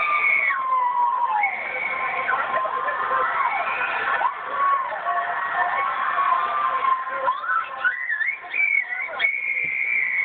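Riders on a Sky Coaster swing ride screaming as they swing, long high-pitched screams that rise, fall and overlap. The sound is played back through a television speaker and comes out thin and dull.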